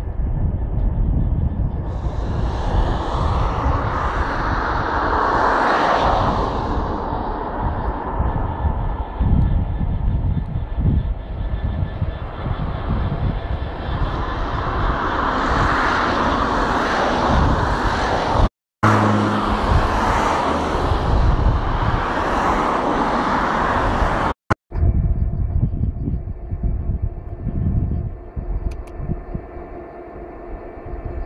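Class 66 diesel locomotive with its two-stroke EMD engine running light past at close range, its engine noise swelling and fading more than once. Wind buffets the microphone, and the sound cuts out briefly twice; the last few seconds are quieter, with a steady hum.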